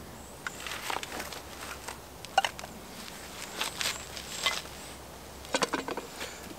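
Light clicks and taps of small camping gear being handled, a spirit burner and a plastic fuel bottle, scattered through the few seconds with the sharpest about two seconds in and another cluster near the end.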